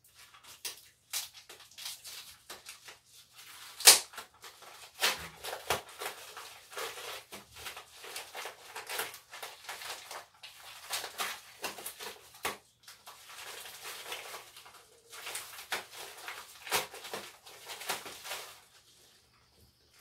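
Plastic packaging pouch being torn and crinkled open by hand, in irregular crackles and rustles with one sharp rip about four seconds in.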